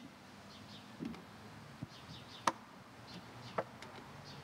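Quiet open-air ambience with faint, short bird chirps recurring in the background and two sharp clicks, about two and a half and three and a half seconds in.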